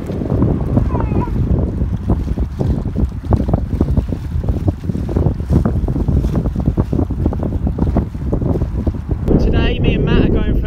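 Strong wind buffeting the microphone: a loud, uneven, gusting rumble. About nine seconds in, it gives way to a voice.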